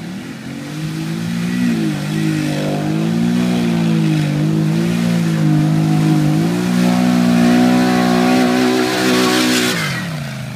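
Polaris Scrambler 850 ATV engine revving hard as the quad ploughs through a deep mud hole, its pitch rising and falling with the throttle and climbing higher about two-thirds of the way in. The engine drops off just before the end as a hiss of spraying water and mud grows.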